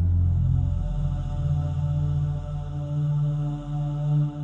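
Background music: a low, sustained drone of steady held tones, chant-like in character.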